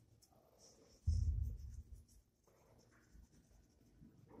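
Fingers rubbing and pushing sand across the glass of a sand-art light table, faint for most of the time. A louder, deeper rub comes about a second in and lasts under a second.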